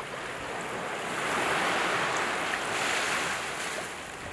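Sea surf: a steady wash of waves, swelling louder about a second in and easing off near the end.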